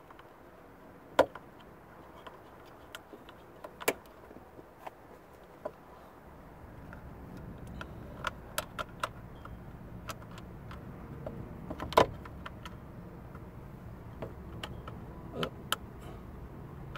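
Scattered sharp clicks and taps of a soft-top latch and its screws being handled and fitted against the windshield header, the loudest a little after a second in, near four seconds and at twelve seconds. A low steady rumble comes up about halfway through.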